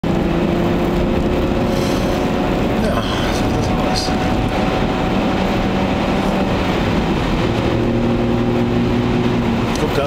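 Inside the cabin of a BMW 525i E34, its 2.5-litre M50B25TU straight-six running steadily under way, with road and tyre noise from a wet track. The engine note changes pitch about three seconds in and settles lower in the last few seconds.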